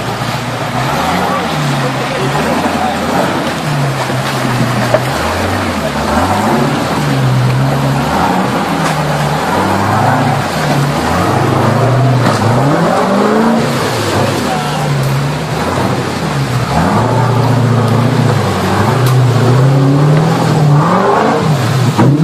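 A motor vehicle's engine revving hard under load, its pitch climbing and dropping again and again.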